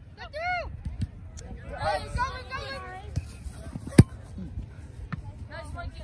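Outdoor youth soccer sideline: a short shout just after the start, fainter overlapping calls from players on the field, and one sharp thud of a soccer ball being kicked about four seconds in, the loudest sound.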